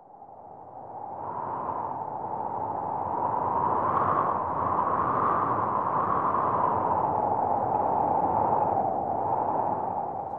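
A soft rushing noise sound effect, like wind or surf, fading in from silence over about the first three seconds and then holding steady with slow swells.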